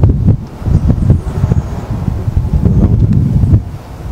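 Wind buffeting an outdoor microphone: a loud, irregular low rumble that gusts and dips.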